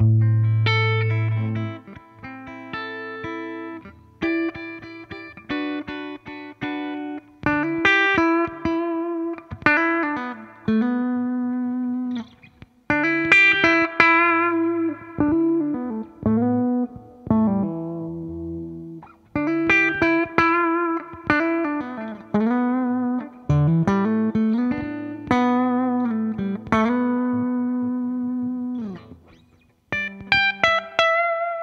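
2008 Gibson Les Paul Standard Plus played on its bridge pickup, the tone knob turned down a little, through a Fender '65 Reissue Twin Reverb amp: a lead guitar solo of single-note phrases with frequent string bends and held notes, with short pauses between phrases.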